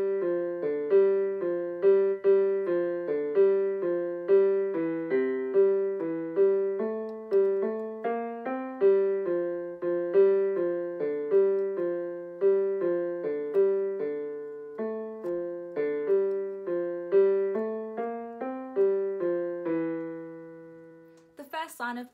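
Casiotone CT-S300 keyboard on its stereo grand piano voice, playing a slow pop melody as a steady run of single notes; the last notes are held and die away near the end.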